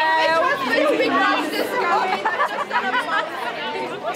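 Several women's voices chattering over one another, a group conversation with no single clear speaker.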